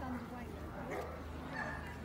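A dog, an Irish setter, giving a short high whine about halfway through and another brief high note a little after, over people talking.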